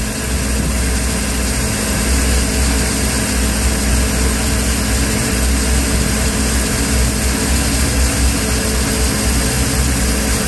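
1987 Volvo Penta AQ211A marine engine running steadily at a raised warm-up idle, its Rochester 2GE carburetor's electric choke still partly closed as the engine warms.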